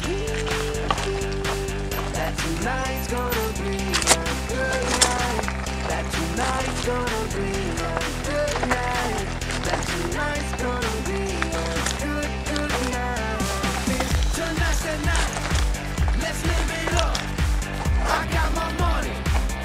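Background music: sustained low chords with a stepping melody over them, changing every few seconds, and a steady pulsing beat that comes in about fourteen seconds in.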